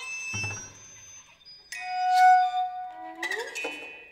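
Contemporary chamber ensemble of piccolo, toy piano, violin, viola, cello and percussion playing sparse new music: a low thud about a third of a second in, a held ringing note that swells to the loudest point around the middle, and a short upward slide near the end.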